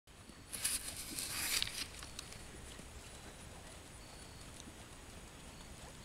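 Faint hoofbeats of a horse moving on a sand arena, with a brief rustling noise about half a second in that lasts about a second and is the loudest thing heard.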